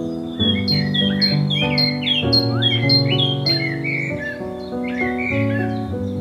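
Background music of sustained chords, with a bird's rapid high chirps sounding over it, thickest in the first half.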